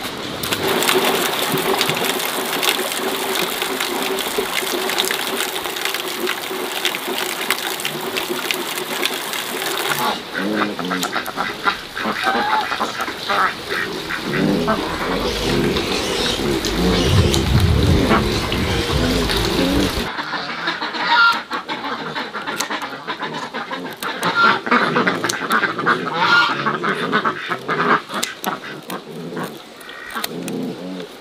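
Domestic geese and ducks calling in a farmyard, with the background sound changing abruptly about ten and twenty seconds in.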